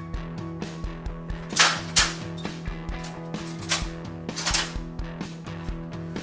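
Tapco sheet-metal brake being worked: a series of sharp metallic clacks from the brake's clamp and bending bar, the loudest about one and a half and two seconds in and again near four seconds, over steady background music.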